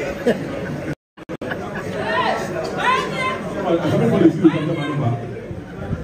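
People talking over one another in a large hall. The sound cuts out for about half a second, about a second in.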